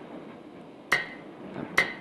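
Metronome clicking a steady beat: two sharp ticks just under a second apart, each with a brief high ring.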